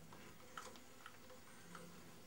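Near silence with a few faint, irregular metallic clicks: an open spanner working the flywheel nut of a British Anzani outboard, the nut acting as its own puller to draw the flywheel off.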